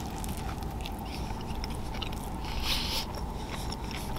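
A person chewing a mouthful of tlayuda, a baked flatbread topped with chorizo, close to the microphone, with louder crunching about a second in and again shortly before three seconds. A steady low hum runs underneath.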